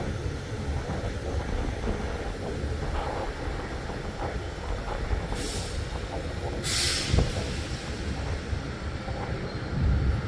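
A train standing at the station gives a steady low rumble, with two short hissing bursts a little past halfway.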